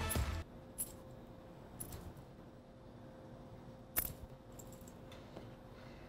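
A few light metallic clinks and taps of a wire whisk and utensils being handled at a pot, the strongest about four seconds in, over a faint steady hum. Music fades out right at the start.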